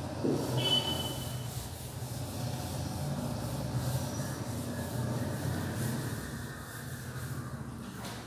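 Chalk being wiped off a chalkboard with a duster, a rubbing noise that is loudest in the first second, over a steady low hum.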